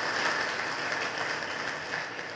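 Audience applauding, a dense clapping that dies down near the end.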